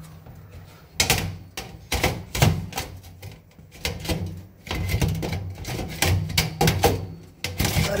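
Irregular metallic clicks and knocks: a stainless-steel baffle filter is handled and pushed against the kitchen chimney hood while someone tries to fit it, and it does not go into place.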